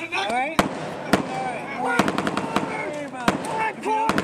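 Gunfire during a small-arms training raid: sharp single shots at irregular intervals, with a quick burst of several shots about two seconds in, over men's shouting voices.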